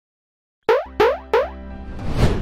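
Animated logo intro jingle: after a moment of silence, three short pitched pop sound effects about a third of a second apart, over a low sustained tone.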